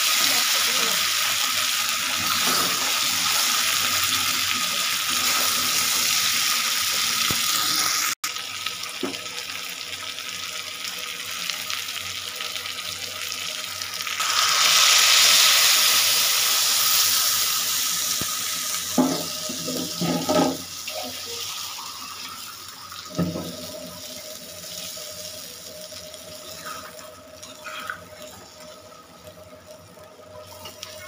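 Chicken and potatoes frying in a hot iron kadai with a steady sizzle. About halfway through, water is poured into the hot pan and the sizzle swells to a loud hiss, then slowly dies down to a simmer, with a few spatula scrapes against the pan.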